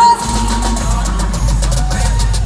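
Live pop music played loud through an arena sound system: a heavy bass line and a driving drum beat, with a short sung note right at the start.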